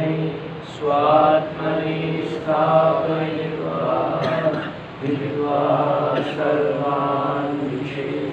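A man chanting Sanskrit verses in a steady recitation, holding long notes on a nearly level pitch, in phrases with short breaks about a second in and about five seconds in.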